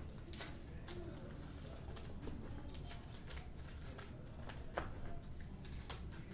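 Trading cards being handled in plastic sleeves and a top loader: faint, irregular clicks and rustles, about one or two a second.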